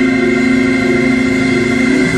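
Organ holding one long, steady chord.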